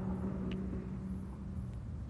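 Low rumble of vehicle traffic with a steady hum that fades out near the end, and one faint tick about half a second in.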